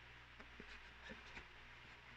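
Near silence with a faint low hum, broken by a few faint light clicks of a cardboard box and lid being handled.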